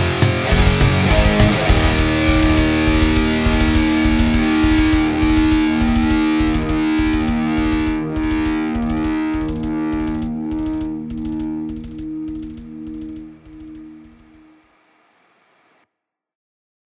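Old school thrash death metal ending on distorted electric guitars holding a final ringing chord over steady programmed drum hits. The music fades out gradually and is gone near the end.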